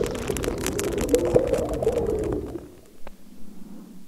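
Bubbling and crackling in water, a dense stream of small clicks and pops as a capsule's beads spill and dissolve, fading out about two and a half seconds in and leaving a few scattered pops.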